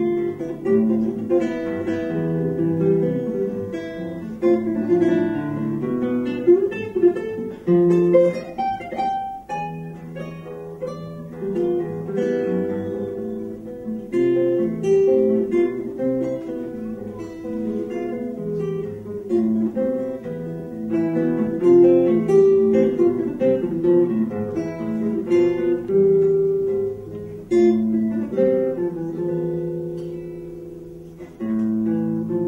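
Solo nylon-string classical guitar, fingerpicked in a melodic piece, with a quick rising run of notes about eight to nine seconds in.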